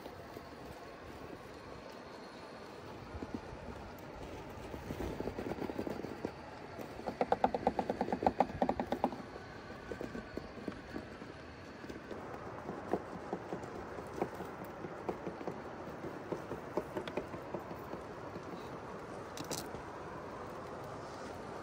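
Axial SCX6 1/6-scale RC rock crawler working its way up rock, its tyres and drivetrain scraping and clicking. A louder run of rapid clicking comes about seven to nine seconds in, and fainter scattered clicks follow.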